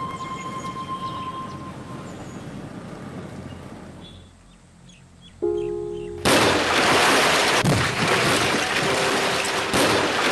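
Soundtrack music with sustained tones fades out, then briefly returns as a held chord. About six seconds in, a loud, steady rushing noise takes over.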